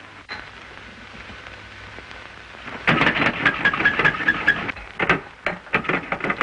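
Carbonated soda sputtering and gurgling in a glass. It starts about three seconds in as a dense crackly spell with quick little squeaks, then comes in shorter spurts near the end. All of it sits over the steady hiss and hum of an early sound-film track.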